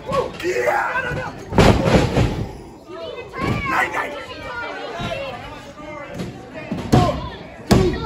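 A wrestler's body slammed onto the canvas-covered boards of a wrestling ring: one heavy, booming thud about one and a half seconds in. Near the end come two sharper slaps on the mat, a second apart, from the referee counting a pin.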